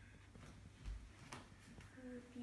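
Near silence: room tone, with a soft low thump about a second in and a couple of faint clicks after it.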